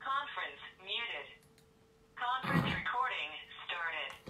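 A voice heard over a telephone line: thin speech with everything above the voice range cut off, in two short stretches with a pause between them. A faint steady tone runs underneath.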